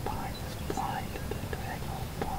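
Hushed whispering: a few short, soft whispered sounds over a low steady rumble.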